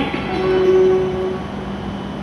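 Steady low hum of an E7 series Shinkansen train standing at the platform in the station hall. A single steady tone is held for about a second near the start.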